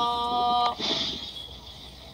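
A singing voice holds one steady note that stops about three-quarters of a second in, leaving a faint hiss.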